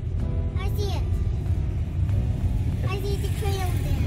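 Low, steady rumble inside a car's cabin as it creeps along in slow traffic, with music and brief voices over it.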